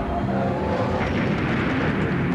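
Toyota 4Runner driving fast, a rushing sound of engine and tyres. A wolf's howl slides down and fades out in the first half-second.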